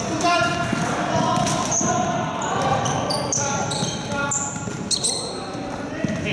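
Basketball game in a large, echoing sports hall: the ball bouncing on the court, players' shoes squeaking in short high chirps, and players' voices calling out.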